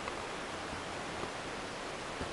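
Steady, even hiss of background noise with nothing else standing out.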